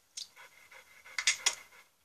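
A dog panting: a few short breathy pants, the strongest two a little past the middle.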